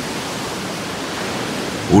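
A steady, even rushing noise that holds at one level without swelling or fading.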